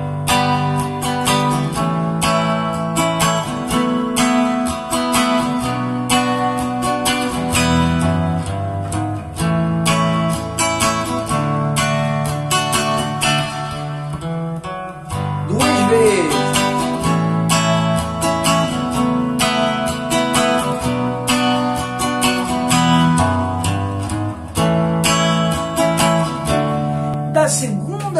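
Nylon-string silent guitar playing the chorus riff, the same as the song's intro. Chords are strummed over bass-note runs, moving through G, A, F♯m, Bm, A and D. There is a short break about halfway, then the riff repeats.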